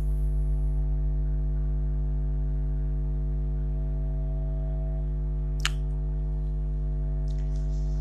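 Steady electrical mains hum, a low buzz with a stack of even overtones, running unchanged under the recording; a single sharp click sounds a little past the middle.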